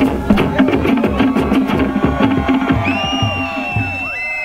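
Fast Polynesian-style drumming: rapid wooden strikes over a deeper drum beat. Near the end, high wavering drawn-out calls join in.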